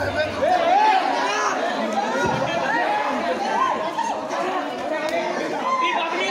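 A crowd of young men, many voices talking and calling out over one another, with no music playing.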